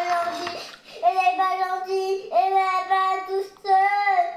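A young girl crying in a sing-song wail, holding long drawn-out notes: a breathy sob near the start, then about three long held notes.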